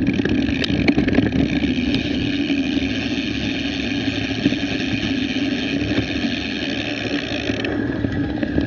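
Mountain bike rolling over a grassy field track: steady tyre rumble and rattling of the bike and its mount, with wind on the microphone and a few sharp knocks in the first couple of seconds. A higher hiss drops out suddenly near the end.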